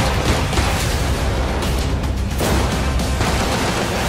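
Loud, dense action-trailer score with a heavy low pulse, with gunshots and impact hits mixed into it.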